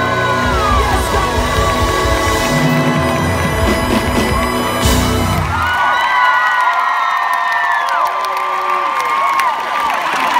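Live pop band playing the close of a song, recorded on a phone among the crowd; the heavy bass stops about six seconds in, leaving the crowd screaming and cheering.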